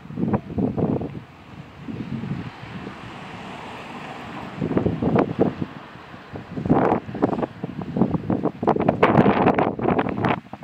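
Wind buffeting the microphone in uneven gusts, with a softer steady rush between them; the gusts come harder about halfway through and again near the end.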